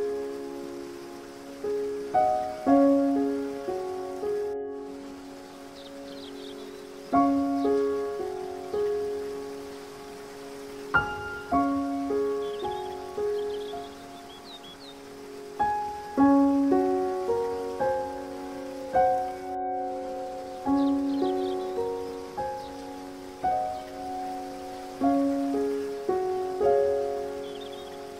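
Solo piano playing a slow, gentle melody, each note ringing on and fading, over a steady hiss of rushing water. Faint high bird chirps come in a few times.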